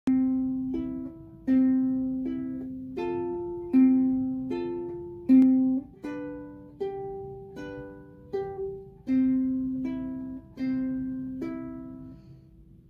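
Solo ukulele playing chords, one stroke about every three-quarters of a second, each chord ringing and fading before the next. It is the instrumental introduction before the singing comes in.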